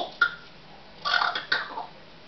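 A pet parrot making beatbox-style vocal noises: a sharp click just after the start, then a quick run of clicks and short pitched sounds about a second in.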